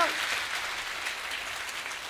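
Concert audience applauding at the end of a song, a dense spread of clapping.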